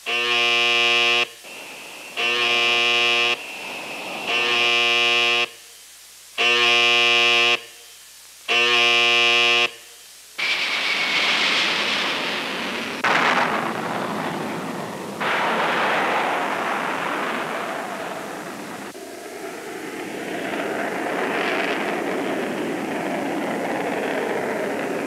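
An electric alarm horn sounds the scramble alarm in five blasts, each a little over a second long and about two seconds apart. It is followed by the steady, loud noise of jet fighters taking off and climbing away. The jet noise shifts in level and tone several times.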